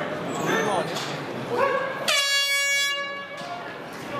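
A single steady air horn blast, about a second long, about halfway through, sounding the start of the round, with crowd voices shouting before and after it.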